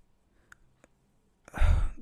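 A few faint clicks, then a man's sigh, a loud breath out, about one and a half seconds in, just before he speaks again.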